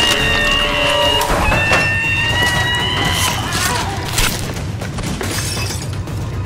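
Horror-film sound mix: tense music with long, high held notes that rise slightly, broken by crashing, shattering impacts.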